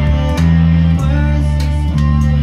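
Rock band recording of electric guitar, bass and drums. A low bass line changes note about every half second, with drum hits on top.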